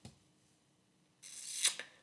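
About a second of dead silence, then a soft hiss rising, with one sharp click near the end.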